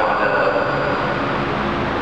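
A man's voice speaking into a microphone and carried over a PA system, over a steady rushing background noise.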